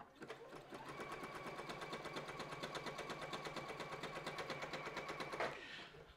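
Juki electric sewing machine running at a steady speed: a rapid, even clatter of stitches over a steady motor whine. It starts just after the beginning and stops about half a second before the end.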